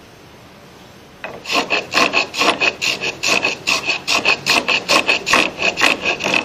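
Japanese wooden hand plane (kanna, 42 mm blade) shaving a wooden board in quick short strokes, about four a second. The strokes begin about a second in, after a brief pause.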